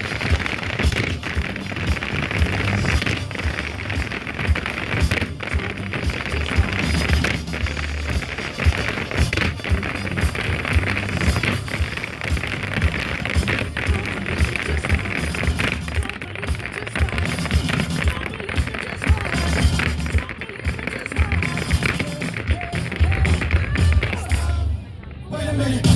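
Irish dance music playing with the rapid taps and stamps of a group of dancers' hard shoes striking a wooden dance board.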